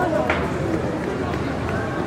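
Background chatter of people talking at an outdoor flea market, several voices overlapping with no one voice in front, over a steady low rumble.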